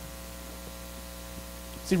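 Steady electrical mains hum in the microphone and sound system: a low hum with a ladder of evenly spaced higher overtones, unchanging throughout.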